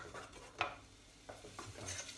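A spoon stirring onions and garlic in a frying pan, with a few light knocks of the spoon against the pan.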